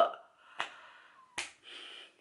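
Two sharp clicks, a little under a second apart, with faint noise after the second.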